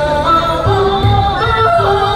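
A female-role Chinese opera singer sings a long, gliding, ornamented vocal line over instrumental accompaniment with low beats.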